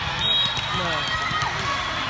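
Busy sports-hall din of many overlapping, echoing voices from players and spectators, with volleyballs being struck and bouncing on the hardwood floor. A brief high squeak sounds about a third of a second in.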